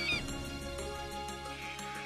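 Orchestral background music, with a short, wavering high-pitched bird-of-prey cry at the start as the eagle flies past. A few soft calls come in near the end.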